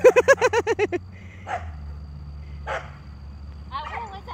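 A woman laughing in a quick run of short bursts for about a second. After that a small pickup truck's engine idles low and steady, with two short noises over it and the first bits of speech near the end.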